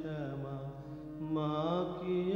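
Background music: a solo voice singing a slow Indian devotional chant over a steady drone, one phrase falling away and a new one starting about halfway through.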